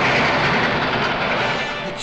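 Cartoon sound effect of a train rushing along the rails, a steady loud noisy rush that eases slightly near the end, over an orchestral score.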